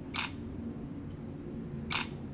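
Samsung Epic 4G's camera app playing its shutter sound through the phone's speaker twice, once just after the start and again near the end, as photos are taken.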